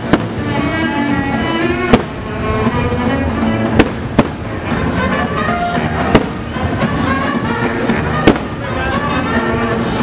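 Fireworks bursting over a show's music soundtrack: about six sharp bangs, a second or two apart, over music that plays throughout.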